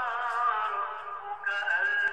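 A man's voice chanting Quranic recitation in a melodic maqam style, holding long wavering notes on one breath and moving up to a higher held note about one and a half seconds in.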